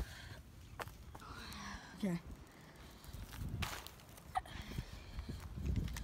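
Rustling and shuffling footsteps of people moving about on leaves and sticks, with a few sharp snaps or clicks. The rustling grows louder near the end.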